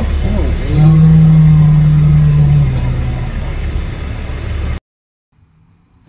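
A bull's long, deep bellow, starting about a second in and lasting about two seconds, over wind buffeting the microphone. The sound cuts off suddenly near the end.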